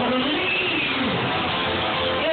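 Electric guitar played at a live gig between songs, over a steady wash of room noise.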